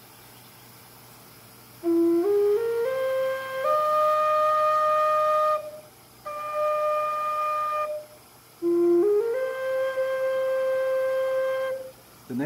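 A river-cane Native American flute is played in a run of notes stepping up the scale to a long held top note. After a short break comes a second, quieter held note, then a second rising run to another long held note. The flute is being test-played by ear just after one of its finger holes was burned larger to bring a flat note up in tune.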